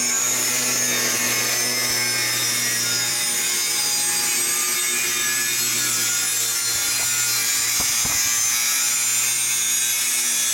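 Electric angle grinder running steadily under load, its disc biting into a length of steel tubing, with a steady motor hum under the high grinding noise.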